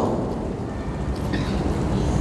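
Steady low rumble and hum of the room's background noise during a pause in speech, with no distinct event standing out.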